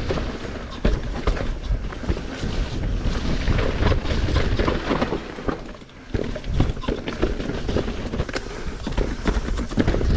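Mountain bike riding down a dirt and root trail: wind rumbling on the microphone over the tyres on dirt, with frequent sharp rattles and knocks from the bike as it goes over bumps. It eases off briefly about six seconds in.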